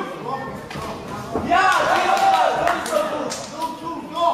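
Voices calling out in a large sports hall, loudest in the middle, with a few short thuds.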